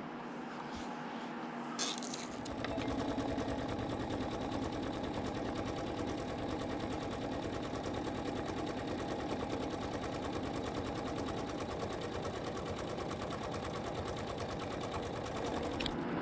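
Computerized embroidery machine sewing a satin stitch over the edge of an appliqué fabric. The machine starts about two and a half seconds in, then runs as a fast, even needle rhythm.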